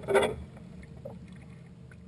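Shallow river water splashing briefly as a shad is released by hand at the bank, followed by a few small faint splashes.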